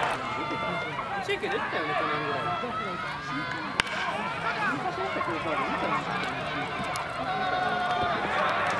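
Baseball bat hitting the ball with one sharp crack about four seconds in, amid players' shouts and calls from the field and bench.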